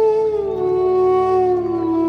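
Bansuri bamboo flute holding a long note that slides down in pitch in two steps, a smooth downward glide, over a steady low drone.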